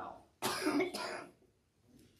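A man's single throat-clearing cough, starting abruptly about half a second in and lasting about a second.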